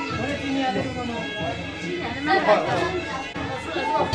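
Several people talking at once, overlapping voices of chatter in a room.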